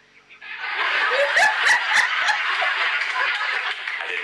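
A live audience laughing and applauding, starting about half a second in, with a woman laughing along close to the microphone.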